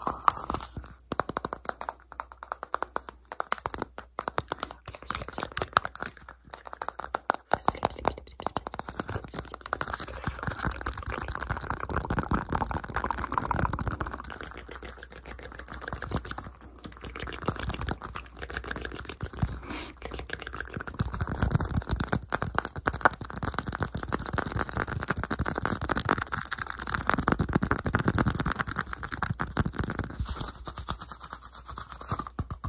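Fingernails tapping and scratching fast on a round white plastic lid close to the microphone. Sharp separate clicks come in the first several seconds, then a dense, continuous scratchy clatter.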